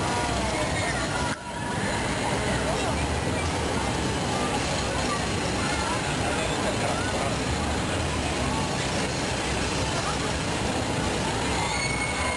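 Steady roar of the gas-fired glassblowing furnaces, with faint voices of people talking over it; the sound drops out briefly about one and a half seconds in.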